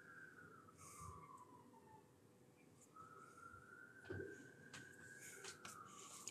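Near silence: room tone, with a faint thin tone that slowly slides down in pitch, breaks off, then rises and falls again, and a few soft clicks.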